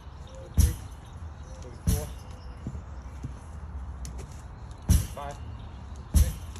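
A hard rubber lacrosse ball smacks sharply against its rebound target three times during lacrosse wall-ball throws: about half a second in, near two seconds, and near five seconds. A short wavering ring follows some of the hits.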